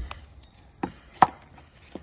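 Plastic bait-mesh loading tube and plunger being pushed down to pack crab bait: a low thump, then three short sharp clacks, the middle one loudest.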